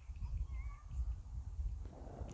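Wind rumbling and buffeting on a clip-on microphone, with a few faint, high chirps over it.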